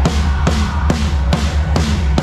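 Live band music: a drum kit playing a steady beat, about two strikes a second, over a sustained deep bass.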